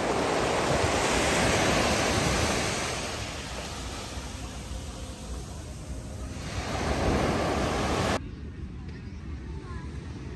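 Small waves breaking and washing up a sandy beach, loudest in the first few seconds and swelling again around seven seconds, with wind buffeting the microphone. Just after eight seconds the surf cuts off abruptly to a quieter, duller background.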